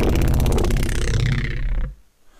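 Heavily distorted neuro bass synth note, processed through a saturator, chorus and CamelCrusher distortion, with its mechanical distortion just turned down. It is held with a shifting, rippling tone and cuts off suddenly near the end.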